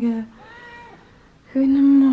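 Pet cat meowing in long, drawn-out calls, mixed with a woman's cooing voice.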